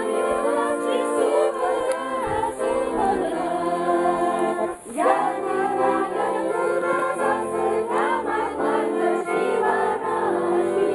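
A group of voices singing a song together in chorus, with held notes, briefly dipping about five seconds in.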